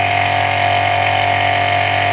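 Electric high-pressure car washer's motor and pump running with a steady hum and a steady whine above it, under pressure.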